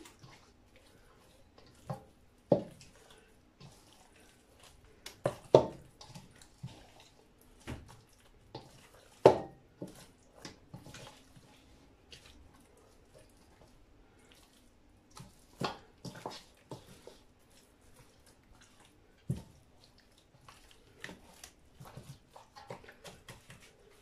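Hands kneading and rubbing an oily spice marinade into a piece of lamb in a stainless steel bowl: irregular wet squelches and slaps of meat, a few of them sharp, over a faint steady hum.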